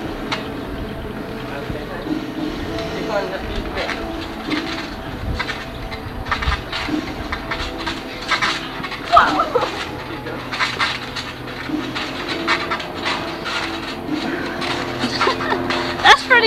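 A trampoline being jumped on by several people: irregular thumps of the mat, with voices mixed in.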